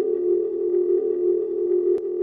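A steady, unbroken electronic drone tone with a few weaker overtones, part of a logo sting.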